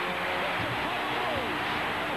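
Crowd noise with voices shouting over it, arching calls rising and falling from about half a second in.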